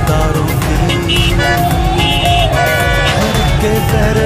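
Car horns honking in long steady blasts, loudest between about one and three seconds in, among road traffic, over a rally song with a heavy beat playing loudly.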